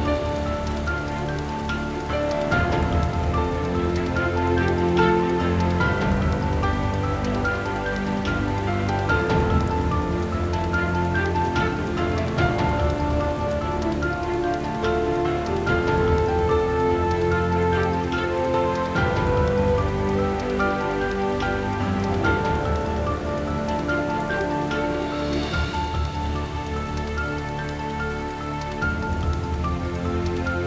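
Steady heavy rain falling, mixed under a slow film score of long held notes.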